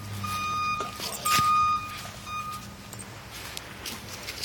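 A vehicle's reversing alarm beeping, one steady high-pitched beep about every second, over a low engine hum; the beeps stop about two and a half seconds in.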